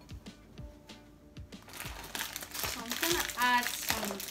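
Plastic cracker sleeve crinkling as it is handled and pulled open, starting about halfway through and going on in dense crackles. Soft background music comes before it, and a brief pitched sound rises out of the crinkling near the end.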